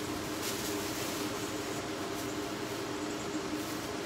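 A steady mechanical hum with a few low tones, even in level throughout, with light rustling of fabric as blankets are handled.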